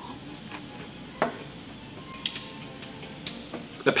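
Quiet background music with a few soft clicks and taps from a stemmed beer glass being sipped from and set down on the table near the end.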